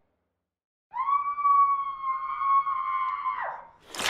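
A person's long high-pitched scream, held on one pitch for about two and a half seconds after a second of silence, then sliding down and fading away.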